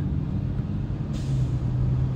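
Steady low drone of a car's engine and tyres heard from inside the moving car's cabin, with a soft hiss joining about a second in.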